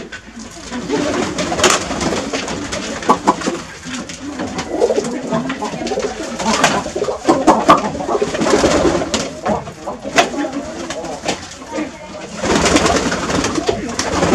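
Many domestic pigeons cooing together in a small wooden loft, with sharp flaps and flutters of wings as birds move about.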